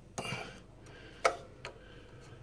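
A screwdriver tip clicking against a brass service valve on copper heating pipe as the valve is turned on. There is one sharp click a little over a second in and a fainter one soon after.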